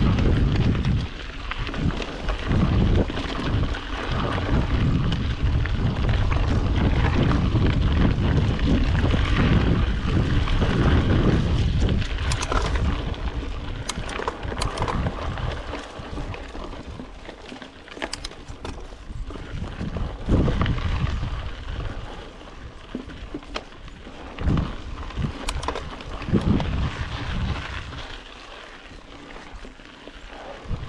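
Wind buffeting the action camera's microphone over the rolling noise of a Yeti SB5 mountain bike's tyres on a dirt trail during a descent, loud for the first twelve seconds or so. After that it is quieter, broken by scattered sharp clicks and knocks from the bike over the ground.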